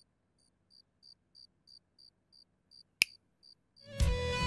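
Faint cricket chirping steadily, about three chirps a second. About three seconds in, a single sharp click from a button pressed on a stereo music system.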